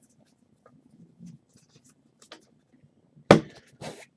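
Faint soft clicks and rustles of trading cards being handled and flicked through, then a sharper knock a little over three seconds in.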